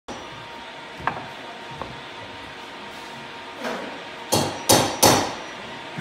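Two light knocks, then three loud bangs in quick succession a little over four seconds in, each dying away briefly.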